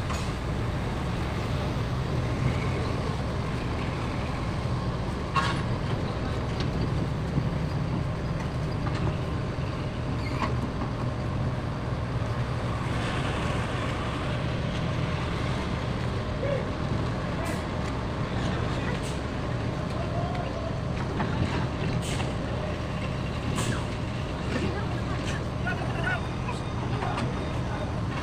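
Steady low engine rumble on a ferry's vehicle deck, with a few faint clicks and knocks.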